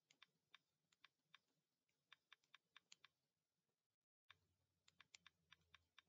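Very faint, light clicks at irregular spacing, a few a second, like keys being pressed one by one, with a brief cut to dead silence about four seconds in.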